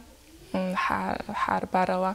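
A person speaking in a studio, starting about half a second in after a short pause.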